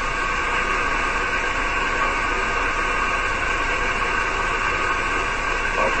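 Steady hiss of band noise from a six-metre amateur radio receiver in upper-sideband mode, heard between transmissions with no station talking. It is even and unbroken, cut off sharply above the voice range.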